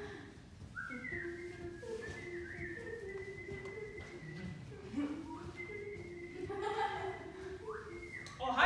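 People whistling and humming long held notes: a high whistle and a lower hum run together, each with short upward slides in pitch.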